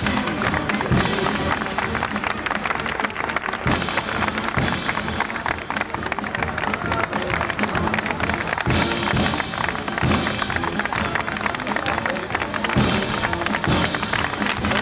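A brass band playing over the chatter of a crowd, with scattered clapping.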